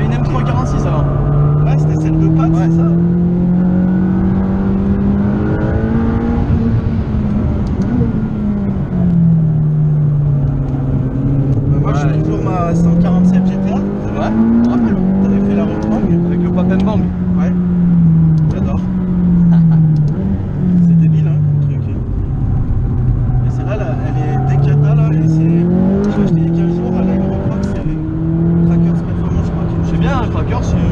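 Motortech-tuned McLaren 540C's twin-turbo V8 heard from inside the cabin at track speed. The engine note climbs under acceleration and falls off on lift and braking, again and again through the corners, with quick drops in pitch at gear changes.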